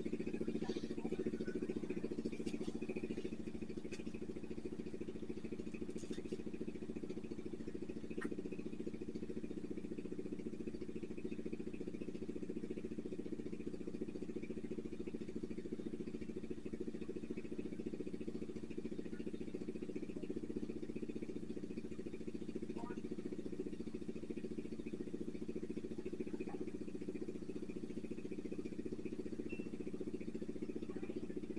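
A steady low machine hum that holds the same pitch throughout, with a few faint light clicks.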